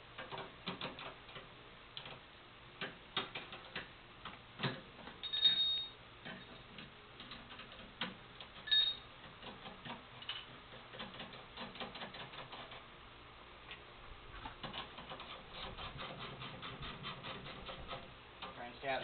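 Steel wrenches clicking and clinking against a bolt and the steel frame of a GS-X pinsetter's roller assembly as a bolt is turned, in irregular taps with a couple of louder clanks and short squeaks, and a quicker run of clicks near the end.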